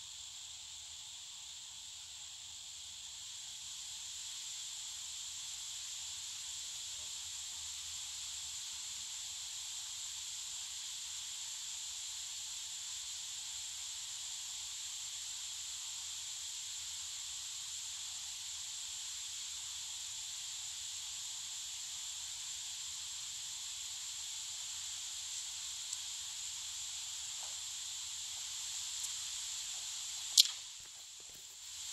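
Steady high-pitched hiss of background noise, with no music or voices. It grows slightly louder about three seconds in, and a couple of faint clicks come near the end.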